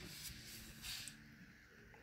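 Near silence: quiet room tone, with a faint short hiss about a second in.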